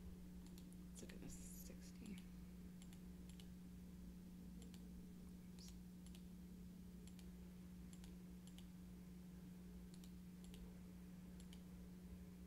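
Faint, irregular computer mouse clicks over a steady low electrical hum.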